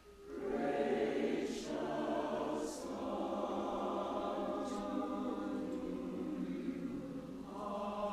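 Mixed church choir of men and women singing a slow, sustained choral piece. It comes back in after a short breath pause at the start and dips briefly near the end before the next phrase.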